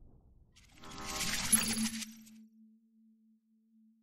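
Logo-animation sound effect: a bright shimmering, chiming burst about half a second in, with a sharp click at its peak, ending on one low held tone that fades away.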